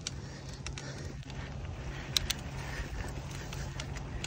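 Mountain bike rolling over a grassy dirt trail: a steady low rumble with a few light clicks and rattles about two seconds in.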